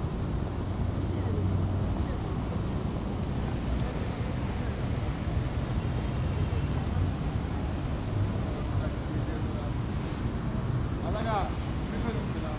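Outdoor city ambience: a steady low rumble of traffic with faint voices, and a brief rising pitched sound near the end.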